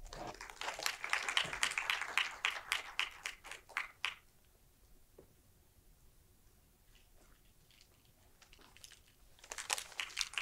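Audience applauding for about four seconds, then stopping abruptly. Faint rustling and clicks near the end, as papers are handled at the lectern microphone.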